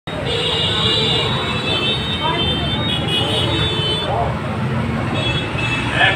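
Roadside traffic noise with background voices. A steady high-pitched tone, like a vehicle horn, sounds from just after the start until about four seconds in.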